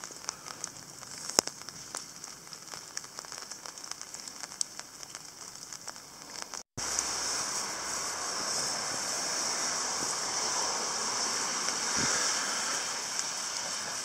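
Steady hiss of rain in a forest, with faint scattered ticks in the first half. The sound cuts out for a moment about seven seconds in and comes back louder.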